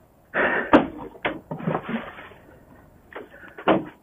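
Clattering and knocking of gear being handled as a coil of rubber fuel hose is picked up, with a sharp knock about three-quarters of a second in and a few smaller knocks near the end.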